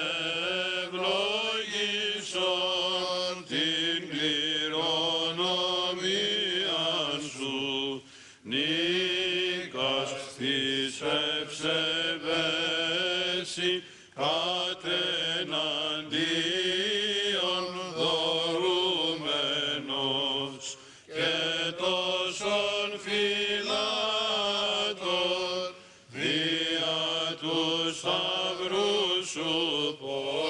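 Men's voices singing Greek Orthodox Byzantine chant in long, melismatic phrases with short breaths between them, a hymn sung during the blessing of water.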